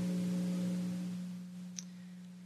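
A steady low electrical hum with fainter overtones above it, dropping in level about a second in. There is a faint tick near the end.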